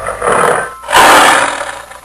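Animated cartoon sound effect: two loud bursts of rushing noise, the second longer and louder, fading out near the end.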